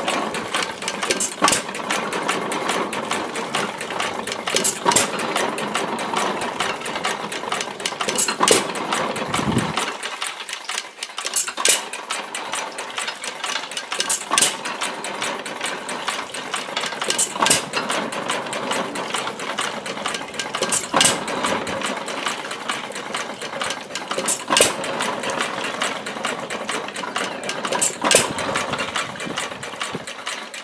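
1918 Baker Monitor 1¼ hp single-cylinder upright engine running and driving a Beatty water pump, with a steady clatter of the pump mechanism and a sharp firing stroke about every three seconds, the engine coasting between firings. Water pours from the pump spout into a metal pail.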